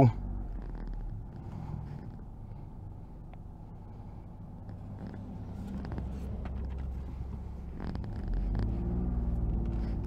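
Suzuki Swift's 1.0 Boosterjet three-cylinder engine heard from inside the cabin, running low and steady, then rising in level about eight seconds in as the car pulls away.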